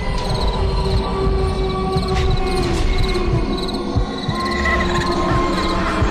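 Crickets chirping in a steady repeating pulse, over long held tones that waver slightly in pitch.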